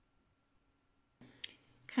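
Near silence, then a little over a second in a faint breath-like rush and one sharp click, just before a woman's voice begins.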